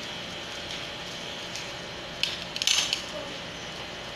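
A quick cluster of small sharp metallic clicks and rattles about two seconds in: steel dental hand instruments (mouth mirror and probe) clinking against each other or the tray, over a steady faint hiss.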